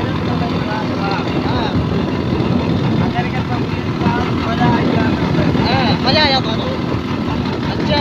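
Motorcycle engine running at a steady road speed while riding, with road noise under it and voices calling out over it now and then.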